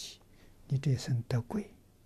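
Speech only: an elderly man speaking softly in Mandarin, a few short syllables about a second in after a brief pause.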